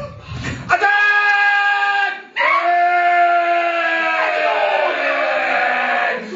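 Improvised extended-technique vocals: a held, pitched vocal tone that breaks off about two seconds in, then a second long tone that slowly sinks in pitch.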